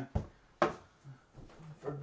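Two sharp knocks about half a second apart, the second louder with a short ring: a handheld object tapped against a cardboard box.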